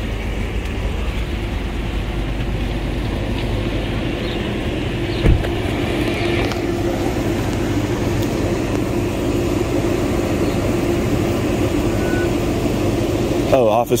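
Motor vehicle engine idling: a steady low running hum with a steady higher tone through the middle. A single sharp knock about five seconds in.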